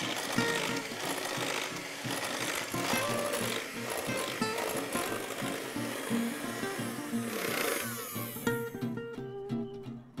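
Electric hand mixer with twin beaters running steadily as it whips chilled cream in a glass bowl toward soft peaks; the motor stops about eight seconds in.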